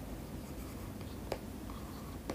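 Faint scratching of a stylus writing on a tablet, with a light tick a little over a second in.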